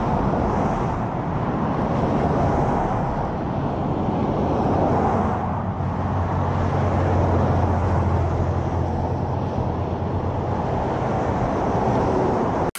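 Road traffic noise: a steady outdoor roar of passing vehicles, with a low engine hum swelling for a few seconds past the middle.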